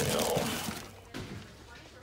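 Plastic trash-can liner crinkling as a hand rummages in it to pull out a cardboard box, loudest in the first half-second and dying away by about a second in.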